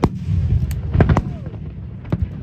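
Aerial fireworks shells bursting overhead: a sharp bang at the start, then a quick cluster of reports about a second in, over a continuous low rumble of booms.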